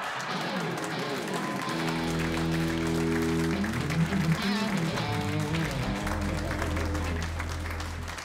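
Audience laughing and applauding. About two seconds in, the band starts a short music sting over the applause: held guitar chords, then a few melodic notes over a steady bass guitar line.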